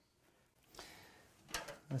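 Faint rustle, then a couple of light clicks near the end as a drawer of a metal tool chest is pulled open.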